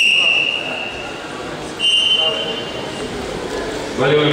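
Referee's whistle blown twice in long steady blasts, the second slightly higher, stopping the sambo bout after an armlock. Faint voices echo in the hall between the blasts.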